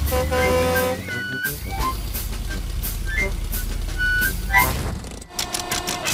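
Cartoon tow-truck engine sound effect: a steady low rumble, with short pitched musical notes played over it. The rumble fades away near the end.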